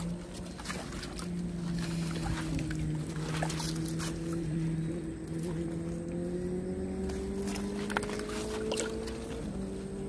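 A steady engine hum whose pitch creeps slowly upward over the last few seconds and shifts near the end, with a few scattered clicks and knocks.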